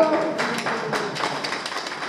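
A man's drawn-out word ends about half a second in. Then comes an irregular run of light taps and clicks over the background noise of a crowd gathered in a large room.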